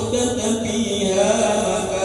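A male preacher's voice intoning Arabic in a melodic, chant-like recitation, holding long notes in the second half.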